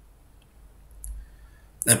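A quiet pause with a faint, short click about a second in, then a man's voice starts near the end.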